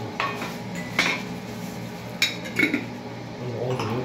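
A few sharp clinks and knocks against a metal cooking pot as chunks of raw meat are packed into it by hand.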